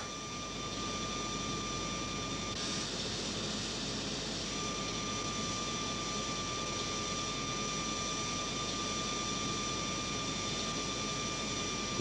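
High-speed punched-card reader running: a steady mechanical whir with a thin steady whine through it. The sound rises slightly just after the start and changes in tone about two and a half seconds in.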